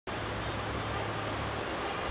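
Steady outdoor street ambience: distant traffic noise with a faint low hum underneath.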